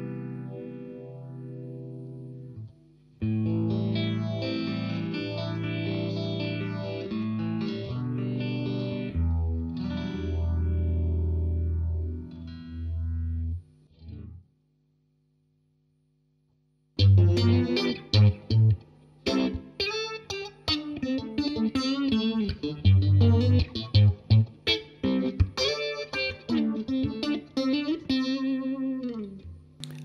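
Electric guitar played through a Boss PH-1 four-stage phaser set to a fast rate, giving Leslie-type sounds. Held chords ring for about fourteen seconds, then after a short pause come quick picked notes and short chord stabs.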